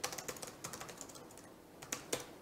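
Typing on a computer keyboard: a quick run of key clicks in the first half, a short lull, then a few more keystrokes near the end.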